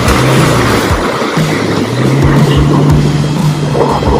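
Background electronic music with a beat, over a Toyota Fortuner's engine revving under load as the SUV claws up a rutted mud track with its wheels spinning.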